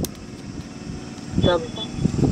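Steady low outdoor background noise during a pause in speech, with a click at the very start and one short spoken word about one and a half seconds in.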